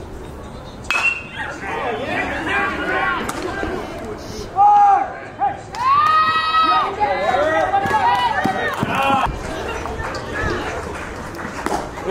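Players and teammates shouting and yelling over one another during a live play on a baseball field, with a single sharp knock about a second in.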